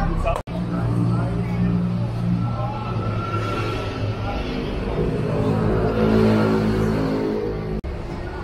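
A motor vehicle engine running close by, a low steady hum whose pitch rises and wavers about five seconds in, over street noise and background voices. The sound drops out for an instant twice, near the start and just before the end.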